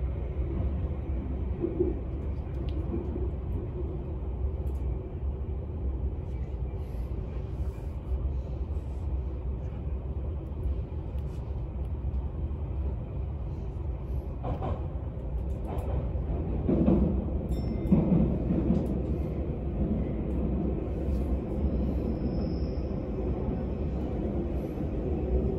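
Steady rumble of an Odakyu 60000-series MSE limited express, heard from inside the carriage as it runs at speed through an underground station and on into the tunnel. A few louder knocks come past the middle.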